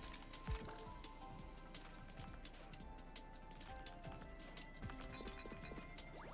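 Online slot game audio: quiet background music with a run of light clicks and taps as symbols drop onto the reels, and a low thud about half a second in.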